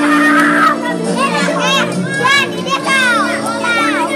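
Children's high voices calling and shouting in short rising-and-falling cries over background music with steady held tones.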